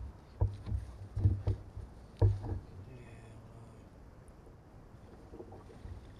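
A handful of dull knocks and thumps on a fishing boat's deck and hull during the first couple of seconds, over a low steady hum that carries on quietly after them.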